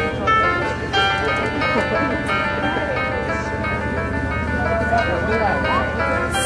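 A children's choir performing, voices over an instrumental accompaniment of held chords.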